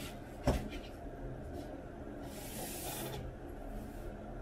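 Hands handling black cotton-fleece sweat shorts laid on a desk: a single soft knock about half a second in, then a brief rustling swish of the fabric about two seconds later, over a low steady background hum.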